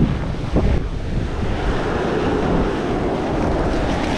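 Surf washing up the beach, with wind buffeting the microphone and a steady rushing noise.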